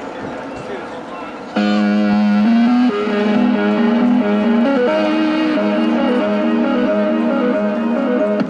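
Street sounds with voices, then about a second and a half in, music starts suddenly from a portable loudspeaker: held notes that move up and down in steps, at a steady level.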